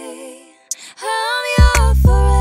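A music track with a singing voice. A sung line trails off into a brief lull about half a second in, then the singing resumes and a heavy bass beat comes back in near the end.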